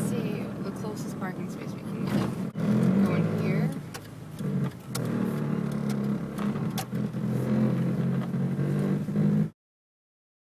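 Car cabin noise while driving slowly: a steady low engine and road hum, with faint voices. It cuts off abruptly near the end.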